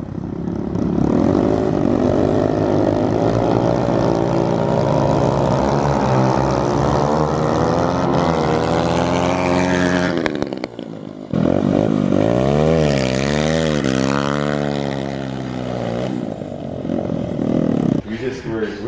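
Two pit bikes racing from a rolling start, their small engines revving hard and climbing through the gears as they approach and pass. About ten seconds in the engine sound drops away briefly, then comes back suddenly with the pitch swinging up and down.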